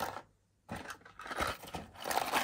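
Cardboard box and paper minifigure packets being handled, rustling and scraping with a few light clicks after a brief silent gap near the start.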